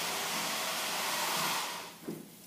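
A steady, even hiss of noise that fades away just before the end.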